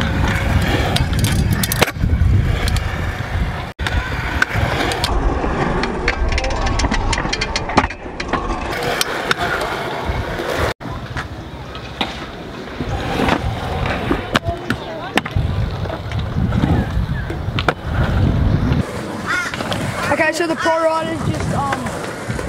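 Stunt scooter wheels rolling on a concrete skatepark bowl, a steady rumble broken by a few sharp knocks. Voices come in near the end.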